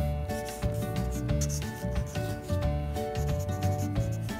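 Marker tip rubbing and scratching across paper in quick, short shading strokes, over background music with long held notes and a pulsing bass.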